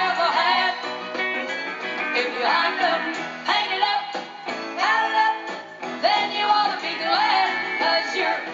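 Live country song: a band with guitar playing, and a woman singing into a hand microphone.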